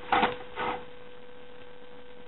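Thin paper rustling in two brief handlings as a folded, cut paper design is opened out by hand, over a steady low electrical hum.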